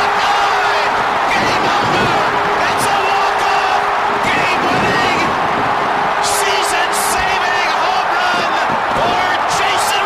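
Packed ballpark crowd cheering loudly and continuously for a walk-off home run, with individual shouts standing out above the cheering.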